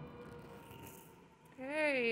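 Faint steady background hiss with a thin low hum, then a woman begins speaking near the end.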